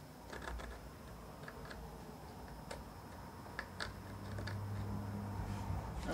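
Steel scribing tool ticking and scratching as it is worked around the edge of a pearl inlay on a wooden fingerboard, in scattered light clicks. A low steady hum comes in about four seconds in.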